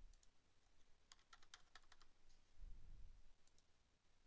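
Faint computer keyboard typing: a couple of keystrokes at the start, then a quick run of about eight keystrokes between one and two seconds in, and two more near the end. A low dull thump comes around three seconds in.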